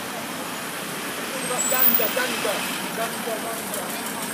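Busy street traffic with vans driving past close by, and faint voices of passers-by in the background.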